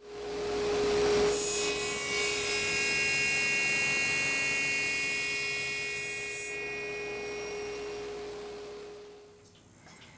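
Small table saw motor starting with a steady hum, its blade cutting through a block of maple burl from about a second in for about five seconds with a high whine, then the motor winding down near the end.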